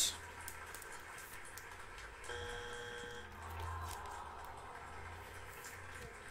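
A faint electronic beep lasting about a second, a little over two seconds in, over a low steady room hum and a few faint clicks.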